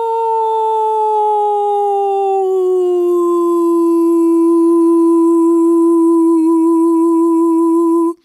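A woman's wordless, hummed or sung vocal note held in one long breath, gliding down in pitch over the first three seconds, then held steady on a lower pitch with a slight waver until it stops at the very end.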